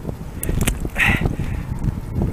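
Water splashing as a snagged carp is grabbed by hand at the surface, with a couple of sharp splashes within the first second.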